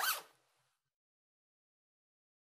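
A brief swishing sound with a rising pitch at the very start, gone within about half a second; after it, dead silence.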